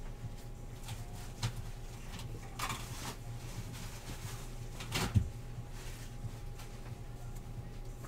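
Baseball trading cards being handled and flipped through by hand: soft, scattered rustles and light card clicks, the most noticeable about five seconds in, over a low steady hum.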